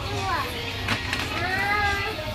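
A young child's high voice making wordless sounds, sliding down in pitch near the start and rising into a held tone near the end, with a few sharp clicks about a second in.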